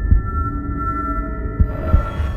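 Electronic dance-pop backing music: steady, high held synth tones over low kick-drum thumps, with no vocals.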